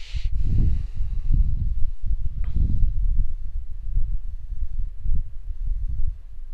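Low, uneven rumbling noise on the microphone, with faint hiss above it.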